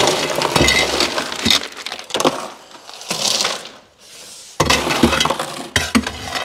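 Loose ice cubes clattering, clinking and cracking as they are pulled out by hand from a chest freezer full of ice, in two loud runs with a lull in the middle.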